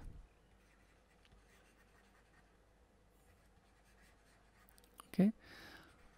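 Near silence, with faint scratching and light ticks of a stylus writing on a tablet screen; a man says "okay" near the end.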